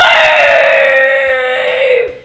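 A child's long, loud yell held on one pitch for about two seconds, sagging slightly in pitch before it cuts off.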